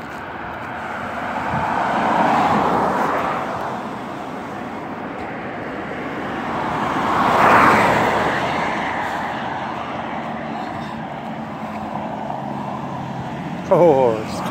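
Road traffic passing close by on a two-lane road: two vehicles go by, tyre and engine noise swelling and fading, one about two seconds in and a louder one about seven to eight seconds in. A low engine hum builds near the end.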